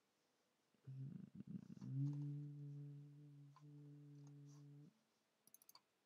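A man's low, drawn-out hum of hesitation ("hmmm"), held on one pitch for about three seconds, followed near the end by a few faint computer mouse clicks.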